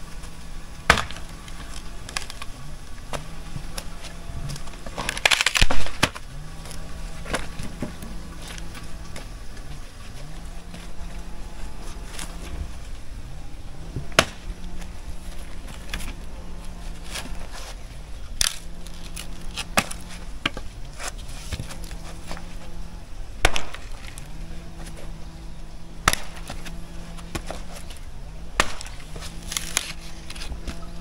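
Axe blows chopping dry wooden poles into firewood: sharp single strikes at irregular intervals of one to several seconds, the loudest about five or six seconds in.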